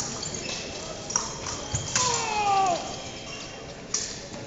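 Fencers' footwork on the strip in an echoing gym: a few sharp foot knocks and stamps. About two seconds in there is a drawn-out tone that falls in pitch, likely a shoe squeak or a call.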